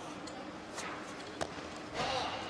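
Steady arena hubbub with a sharp knock about one and a half seconds in, as a loaded barbell with bumper plates is pulled and caught in a clean.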